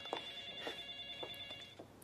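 A faint, steady high electronic tone with several overtones, held for nearly two seconds and stopping shortly before the end.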